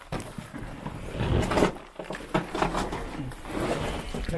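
Irregular scuffing, rustling and small knocks from people moving about with a handheld camera in a small enclosed brick space.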